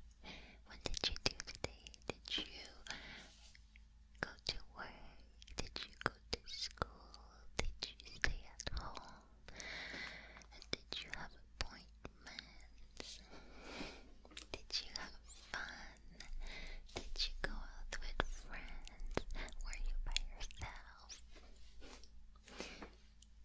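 Soft whispering close to the microphone, with many small sharp clicks and rustles of fingers touching the microphone's ears.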